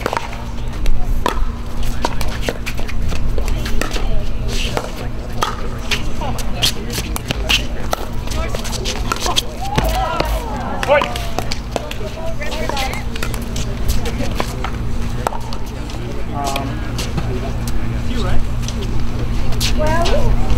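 Pickleball rally: paddles hitting a plastic pickleball back and forth, sharp clicks at irregular spacing, over a steady low hum and distant voices.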